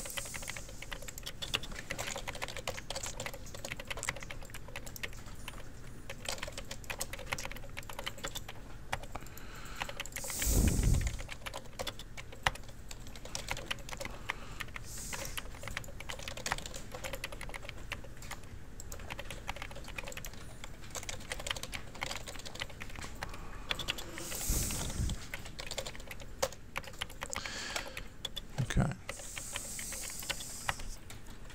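Computer keyboard typing in quick irregular runs of key clicks, with a few dull thumps; the loudest thump comes about eleven seconds in.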